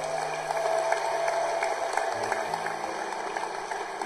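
Audience applauding steadily after a speech.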